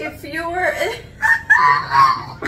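Women laughing loudly, a high-pitched, shrieking laugh that peaks near the end.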